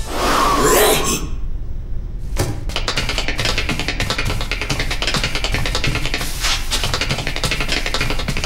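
Upbeat dance music with a fast, steady beat that comes in about two and a half seconds in, after a short swooping sound at the start and a brief lull.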